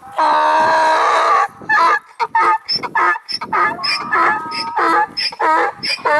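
Donkey braying: one long drawn-out note, then a quick run of alternating hee-haw calls.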